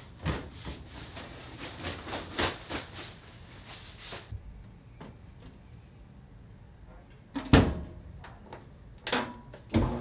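Clothes rustling as they are handled and loaded into a top-loading washer, then the washer's lid shut with a loud thud about seven and a half seconds in. A few sharp clicks follow near the end.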